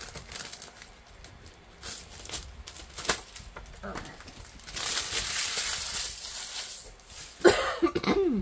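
Paper and plastic wrapping rustling and sliding as items are handled and lifted out of a cardboard box, with a few light knocks and a longer rustle in the middle. Near the end comes a short, startled vocal exclamation, the loudest sound.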